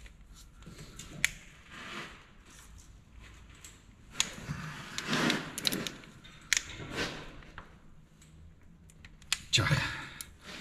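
A few sharp metallic clicks and knocks of a hand wrench being worked on the pump-injector clamp bolts of a TDI cylinder head.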